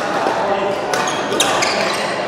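Badminton rackets striking a shuttlecock in a fast doubles rally: sharp cracking hits, clustered about a second to a second and a half in, mixed with short high squeaks from shoes on the court mat.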